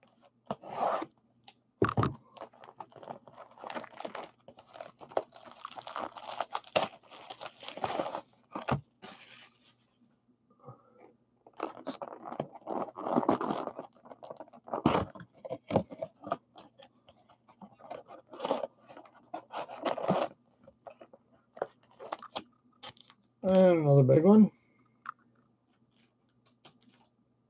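Plastic shrink wrap crinkling and tearing as a trading-card box is unwrapped and opened, with irregular rustling, scraping and sharp crackles throughout. Near the end comes one loud sound about a second long whose pitch wavers up and down.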